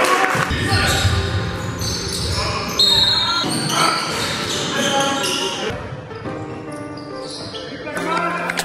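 Basketball game sound in a sports hall: a ball bouncing on the court and players' voices, over a backing music track with held chords that grows quieter after about six seconds.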